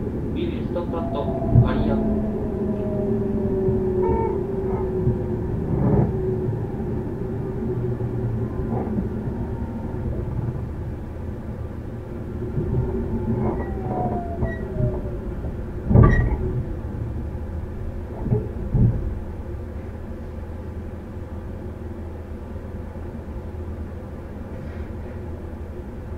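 JR Central 313 series electric train heard from inside the car: steady running rumble of wheels and Toshiba IGBT-VVVF traction motors, with a motor whine that falls in pitch twice and several sharp knocks over rail joints or points. The sound eases off toward the end as the train slows.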